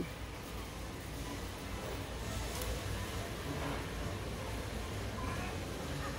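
Steady low background hum and hiss of a large store's ambience, with no distinct events.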